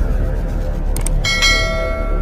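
Two short mouse-click sound effects, one at the start and one about a second in, followed by a bright bell ding that rings on and slowly fades, over background music.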